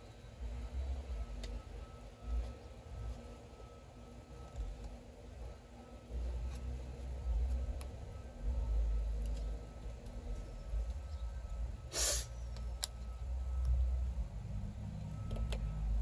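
PKS Kephart XL bush knife, a 1095 high-carbon steel blade, carving a notch into a stick of wood: faint cuts and scrapes with a few light clicks, and one sharper hissing stroke about twelve seconds in, over a low, uneven rumble.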